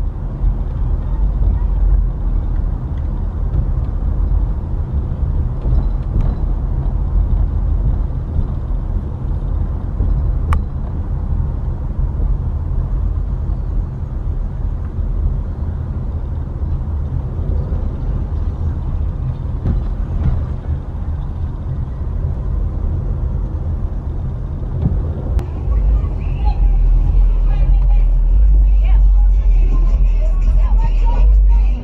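Steady low rumble of a car driving slowly, heard from inside the cabin, with indistinct voices. It grows louder over the last few seconds.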